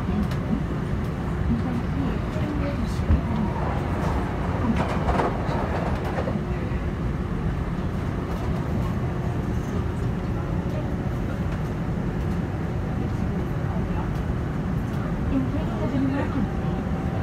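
Subway train running at speed, heard from inside the car as a steady low rumble of wheels on track.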